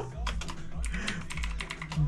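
Computer keyboard typing: a quick run of keystrokes, clicking in short clusters.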